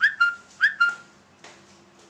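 Whistling: four short high chirps in two quick pairs, each jumping up sharply and then holding its pitch, followed by a faint click.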